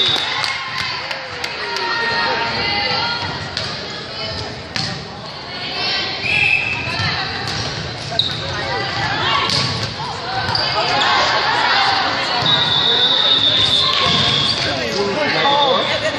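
Indoor volleyball rally: the ball struck several times by hands and forearms as sharp slaps, with short high sneaker squeaks on the gym floor. Players' and spectators' voices carry on underneath, echoing in the large hall.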